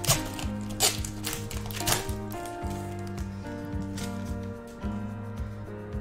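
Background music with a steady melody, over which a foil Pokémon booster pack wrapper crinkles and tears in three sharp rustles within the first two seconds as it is pulled open.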